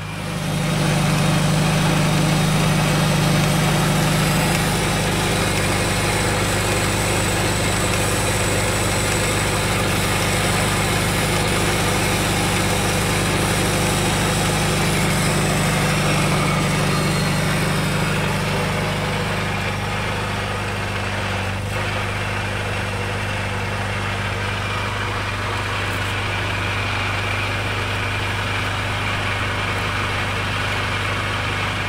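Small vintage tractor's engine running steadily as it pulls a cultivator through the corn rows, a low, even drone. It gets louder right at the start and eases slightly about two-thirds of the way through.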